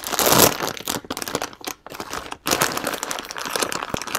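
Crinkly foil and plastic packaging handled and unwrapped by hand, an irregular run of crinkling that is loudest at the very start.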